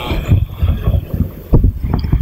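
Irregular low thumps and rumble on a microphone, several a second, with no voice.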